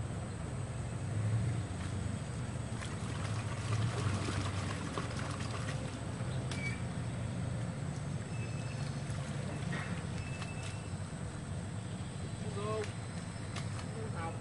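A low, steady motor drone runs throughout, with leaves rustling as the angler moves through the water plants, and faint voices briefly near the end.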